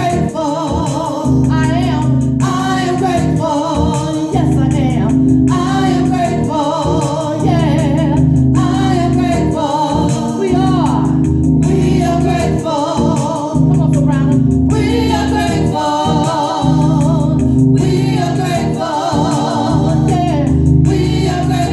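Small gospel choir singing in harmony over sustained keyboard chords, phrase after phrase with short breaks between them.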